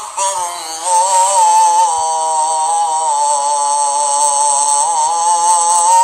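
Islamic chanting by a single voice: long, wavering, ornamented held notes in one nearly unbroken line, after a brief dip in loudness in the first second.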